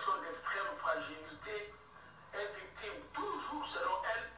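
A man's voice reading the news, heard through a television's speaker.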